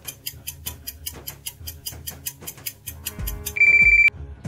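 Countdown-timer sound effect: fast, even clock ticking, about five ticks a second, over low background music. About three and a half seconds in, a loud steady electronic beep sounds as the time runs out.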